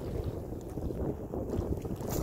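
Wind buffeting the microphone: a steady, low rumbling noise with no distinct events.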